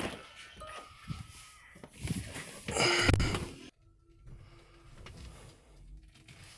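A man's breathing, picked up close by the microphones of head-worn smart glasses, with handling rustles and a loud noisy burst about three seconds in. A faint steady hum follows the burst.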